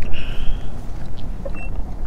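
Wind buffeting an outdoor camera microphone: a steady, loud low rumble. A brief high whine lasts about half a second near the start.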